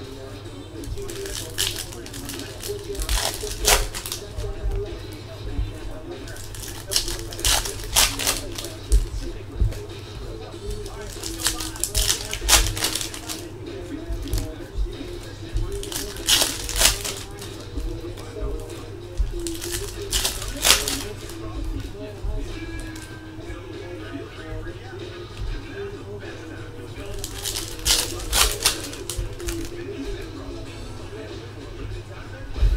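Trading-card pack wrappers crinkling as they are torn open, and cards being handled and flicked through, in sharp crackly clusters every few seconds.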